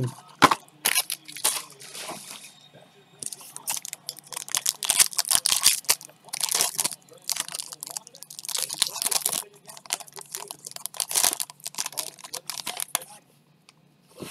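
Foil trading-card pack wrapper being torn open and crinkled by hand, in irregular bursts of sharp crackling rustles.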